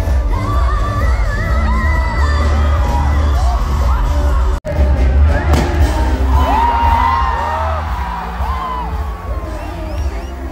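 Live pop band amplified loud, a woman singing lead over heavy bass, keyboard and guitar. The sound cuts out for an instant about halfway through, then the song carries on.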